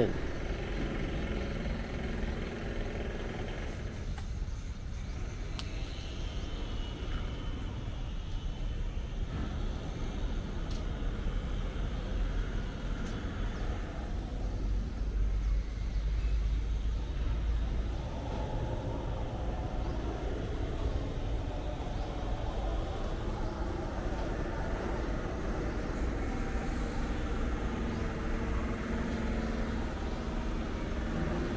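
Steady low outdoor rumble, a little stronger about halfway through.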